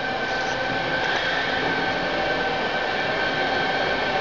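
Steady hum of a running machine with a constant high-pitched whine.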